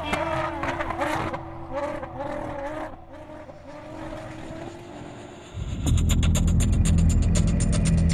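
TV studio audio with voices gives way, about five and a half seconds in, to a loud steady low hum with a fast, even ticking pulse, typical of a car engine idling heard from inside the cabin.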